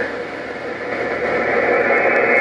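Steady static hiss from an HR2510 radio's speaker, tuned to 27.025 MHz, in a gap between spoken transmissions: muffled, with no treble, dipping slightly at first and then holding level.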